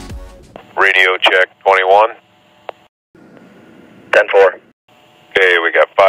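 Race-team two-way radio chatter: a man's voice in four short, thin-sounding transmissions with gaps between them. Music from the previous segment fades out in the first half-second.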